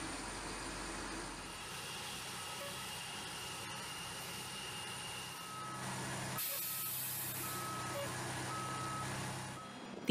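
Heavy truck engine running slowly under load as it drives onto a cargo ramp. In the second half a vehicle backup alarm beeps at about one beep a second, and a short burst of hiss comes about six and a half seconds in.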